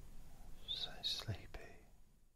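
A man whispering a word or two softly, with hissing s-sounds, about halfway through, then the sound trails off.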